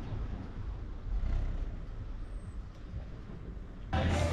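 Steady low rumble of street traffic noise.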